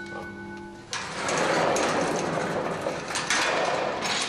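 A ringing bell tone, likely the mine shaft's signal bell, dies away in the first second. A steady rattling, rushing noise from the shaft cage then comes in suddenly, with a few sharp metal knocks near the end as its mesh gate is handled.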